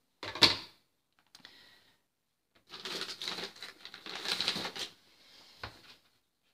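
Rubber stamp being inked on an ink pad: one sharp clack about half a second in, then about two seconds of rapid tapping and scraping, and a single knock near the end.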